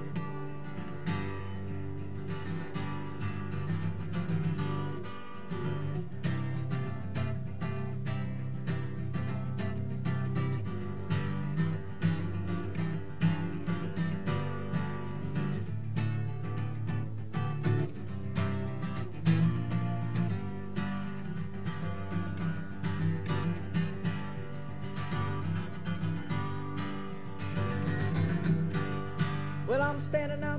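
Solo acoustic guitar played in a steady strummed rhythm, the instrumental introduction to a folk song before the vocal comes in.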